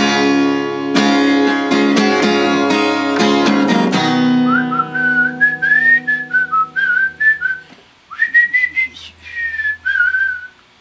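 Acoustic-electric guitar strummed in chords, then a last chord left to ring about four seconds in, dying away near eight seconds. Over it a man whistles a melody in short phrases that rise and fall.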